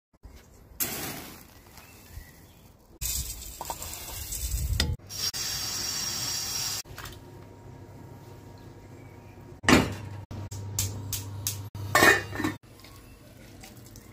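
A run of short, abruptly cut kitchen sounds as cut corn is soaked and cooked in a stainless steel saucepan: the grain and water being handled in the pan, and the pan clattering against utensils. The loudest knocks come near the end.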